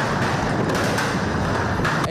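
A large fire burning a New Year's effigy (monigote) in the street: a steady rushing noise with a few faint pops.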